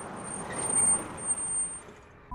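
Open-top Maruti Gypsy jeep driving by at speed: a rush of engine and road noise that swells to a peak past the middle and falls away near the end, with a thin high whine over it.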